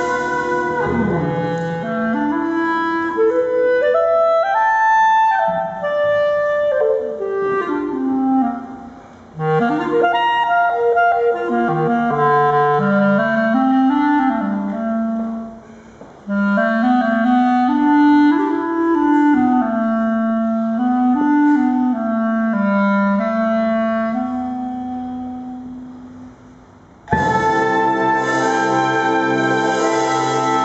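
B-flat clarinet playing an exposed solo melody in phrases, from low notes up into its upper register, with short breaks about nine and sixteen seconds in. Its last long note fades away, and the full ensemble comes back in about a second before the end.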